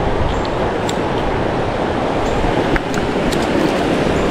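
Steady rush of a swollen river running fast over rocks, close to the microphone, with a few faint clicks.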